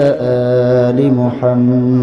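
A man's voice chanting Arabic salawat (the Durood on the Prophet Muhammad) through a public-address microphone, holding long melodic notes with a short break for breath near the middle.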